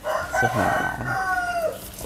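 A rooster crowing once: a single drawn-out crow of about a second and a half that drops in pitch at the end.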